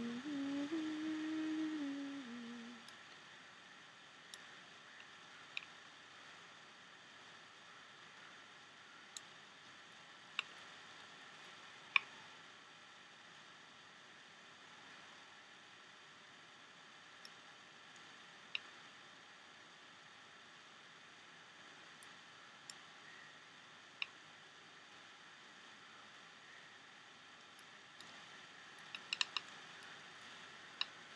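A short hummed phrase of a few stepping notes lasting about two and a half seconds at the start. Then faint, sparse, sharp clicks from handling rubber loom bands with a crochet hook, with a small flurry of clicks near the end.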